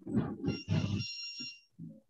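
Indistinct low voice sounds, with a high ringing tone that comes in about half a second in and lasts about a second.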